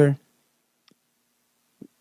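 A man's amplified voice ends a phrase through a PA, then a pause of near silence holding only a faint click about a second in and a brief low sound just before he speaks again.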